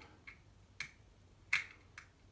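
A few sharp clicks, the loudest about one and a half seconds in, as an Allen key tightens the bolt of a bell clamp on a scooter handlebar.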